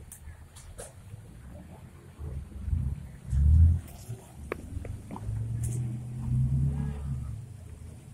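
Off-road 4x4's engine revving in deep surges, loudest about three and a half seconds in, then held at a steadier rev for a couple of seconds near the end.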